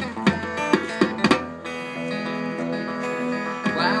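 Live instrumental passage: a strummed electric guitar with hand-drum (bongo) hits over the first second and a half, then guitar chords ringing on alone. A singing voice comes in at the very end.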